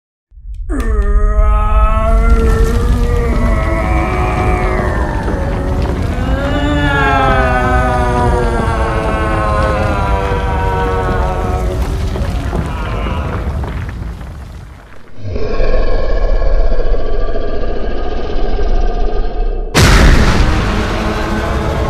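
A huge monster's long, wavering roars and groans over a deep rumble, layered with dramatic music. At about 15 seconds it gives way to a steadier drone, and a sudden loud boom comes near the end.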